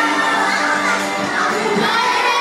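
Music playing, with a crowd of children shouting and cheering over it.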